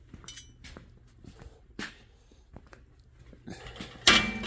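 Faint scattered clicks and light knocks over a low steady hum, the sharpest click a little before two seconds in.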